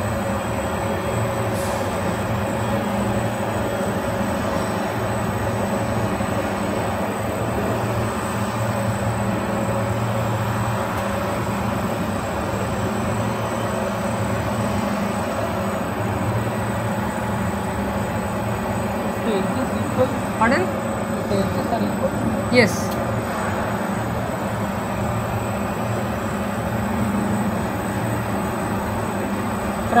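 Laminated-glass line machinery running steadily: a roller conveyor carrying glass into the heating oven and nip-roll press, a continuous rolling hum with steady tones. A couple of sharp clicks come about two-thirds of the way in.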